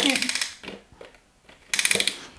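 Rapid plastic ratchet clicks from the mechanism of a toy slime-challenge hat as its sticks are worked, in two short runs: one at the start and one near the end.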